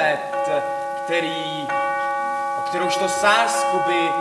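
Live stage music of several sustained, steady ringing tones, like struck bells or an electronic drone; a further set of higher tones comes in a little before halfway and holds, with voices sounding faintly over them.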